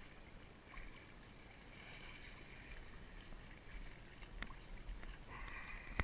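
Faint splashing water from a hooked muskie thrashing at the surface beside the boat, coming in a few short spells and strongest near the end, with one sharp click a little past the middle.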